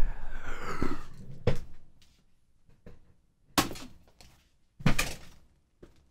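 Camera handling noise: rubbing and shuffling for about the first second, then a few short knocks, the two sharpest about three and a half and five seconds in, as the camera is moved and set down.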